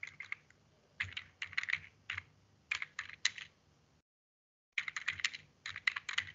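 Typing on a computer keyboard: runs of quick keystrokes with short pauses between them. The sound drops out to dead silence for under a second about two-thirds of the way through.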